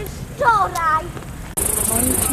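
Crickets chirring in a steady, high-pitched chorus that starts suddenly about one and a half seconds in, after a child's brief voice.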